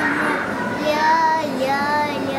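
Young children singing a song, holding drawn-out notes.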